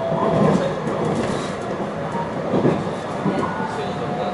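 Running noise inside a JR West 223 series 2000 electric multiple unit at speed: a steady rumble of wheels on rail, with a louder knock about half a second in and another a little past the middle.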